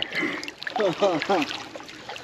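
A man laughing in three short falling "ha"s a little under a second in, with light splashing and trickling of shallow creek water around his hands.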